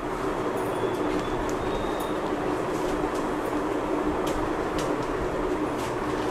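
A steady mechanical hum over an even rumbling noise, with a few faint clicks.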